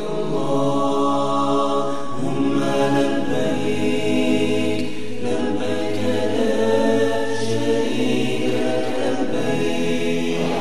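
Unaccompanied male vocal chant with long held notes that change pitch every second or two.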